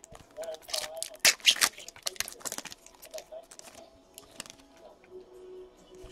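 Trading cards being handled and flipped through, with irregular crisp rustling and light clicks of card stock.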